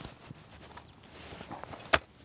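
Faint handling sounds of a folding camp cot's metal leg frame and fabric being worked by hand: light rustling and small knocks, with one sharp click near the end.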